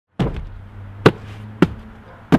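Hands slapping the top of a cardboard shipping box, three thumps spaced about half a second apart.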